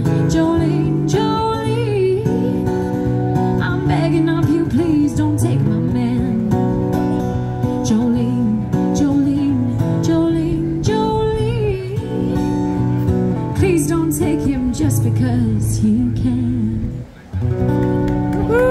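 A woman singing a country song to her own strummed acoustic guitar, amplified through a microphone and small busking amplifier. The music breaks off briefly near the end.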